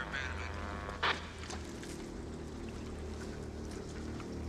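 Idling car engine: a steady low hum, with one short spoken word about a second in.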